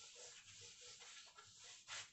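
Faint swishing strokes of a cloth duster wiping a whiteboard clean, with a louder stroke near the end.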